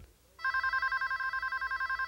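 A telephone's electronic ringer ringing for an incoming call, starting about half a second in. It trills rapidly between two high tones.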